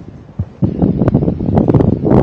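Wind buffeting the microphone: an irregular, gusty rumble that grows louder about half a second in.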